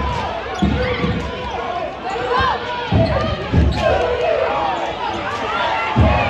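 A basketball being dribbled on a hardwood gym floor, a few separate thumps, over the chatter of spectators' voices.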